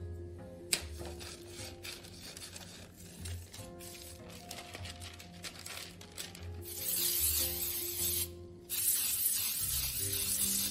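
Aerosol baking spray hissing onto metal cake pans in two bursts of about a second and a half each, starting about seven and about nine seconds in, over background music.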